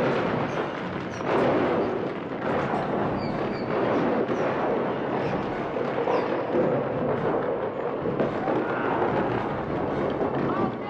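Movie action sound effects: a sudden loud crash, then a dense, continuous din of rumbling and crashing as a giant creature is fought in a cave.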